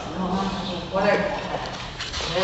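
A person's voice talking, the words not made out, louder from about a second in.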